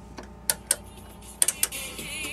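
A few sharp clicks as the buttons on a ship cabin's wall-mounted audio control box are pressed, three in quick succession about one and a half seconds in, after which music starts playing from the cabin speaker near the end.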